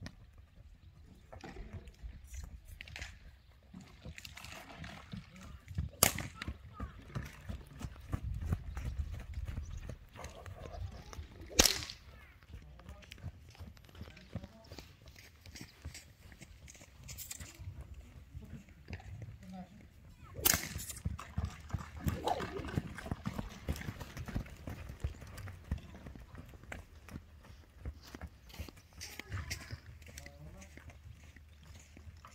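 Horses moving on sand with soft, scattered hoof sounds, broken three times by a loud sharp crack, the loudest sounds heard, spaced several seconds apart.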